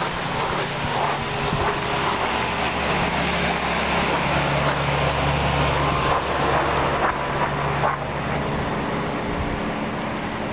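Outdoor air-conditioner condenser units running with a steady hum and fan noise, loudest in the middle as they are passed.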